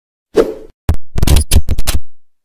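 Edited-in sound effects: a short whoosh, then a quick run of about half a dozen sharp pops and smacks with a deep thud under each.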